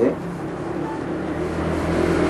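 A road vehicle's engine rumble, growing louder as it approaches and passes by.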